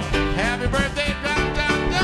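A live band playing a country-rock song, with acoustic guitar in the mix.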